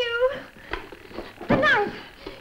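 A woman's two high-pitched distressed cries: one right at the start, and a second, falling one about one and a half seconds in.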